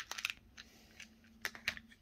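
Small hard-plastic clicks from a weekly pill organizer's removable day compartment being handled and snapped shut: a quick cluster of clicks at the start, then two sharper clicks about a second and a half in, over a faint steady hum.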